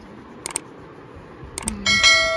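Subscribe-button overlay sound effect: two computer-mouse clicks about a second apart, then a notification bell chime that starts near the end and rings on.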